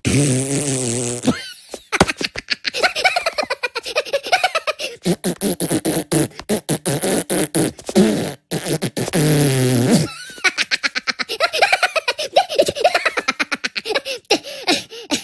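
Cartoon Minion voice blowing loud raspberries and fart noises: one long wavering blast at the start and another just after the middle, with sputtering in between. Giggly laughter in quick bursts follows near the end.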